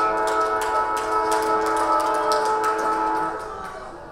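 A ground siren sounds a loud, held, chord-like tone, the sign that the half is over. It cuts off about three seconds in, with sharp clicks scattered over it.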